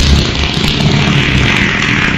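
A long, loud, rumbling fart sound effect, heavily distorted and running without a break.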